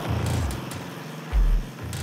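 Electronic Congo techno track playing, with deep bass booms about a second and a half apart over a busy beat of high clicks and ticks.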